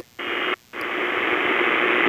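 AM radio static and hiss from a CS-106 receiver tuned between stations at night, with a faint steady tone underneath. The hiss drops out twice for a moment, at the start and about half a second in, as the receiver steps to the next frequency.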